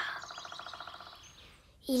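Cartoon birdsong sound effect: one rapid trill of about fifteen notes a second, fading out over about a second and a half.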